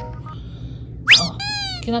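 A cartoon-style edited-in sound effect: a very fast rising whistle-like sweep about a second in, then a short high-pitched call that rises and falls.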